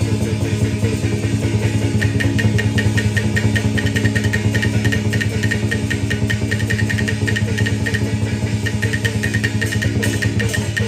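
Chinese opera fight-scene accompaniment music: a fast, continuous percussive beat over a sustained low tone, with a regular high, clicking beat joining about two seconds in.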